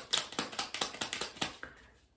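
A deck of tarot cards being shuffled by hand: a quick, even run of card snaps, about six a second, that trails off near the end.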